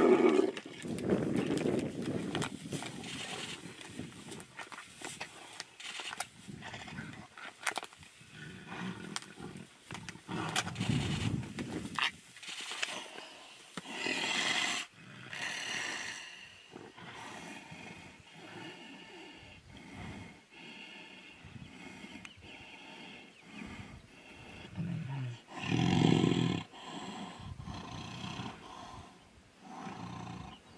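Tigers snarling and roaring while fighting, in repeated loud bursts between quieter stretches; the loudest come right at the start and about 26 seconds in.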